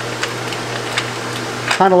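Light clicks and rubbing of bare copper ground wire being bent and fed into the ground block of a metal disconnect box, over a steady low hum and hiss; a man's voice comes in near the end.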